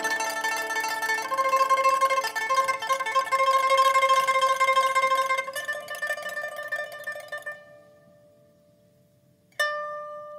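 Pipa played solo, plucked notes and held tremolo notes that die away to near silence about eight seconds in, then a single sharp plucked note near the end.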